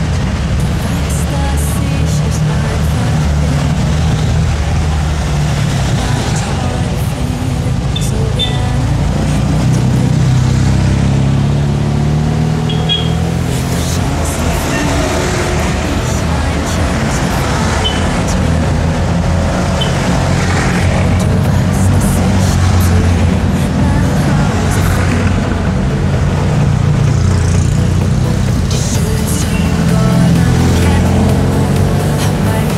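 Background music mixed with the small air-cooled twin-cylinder engines of classic Fiat 500s running past one after another.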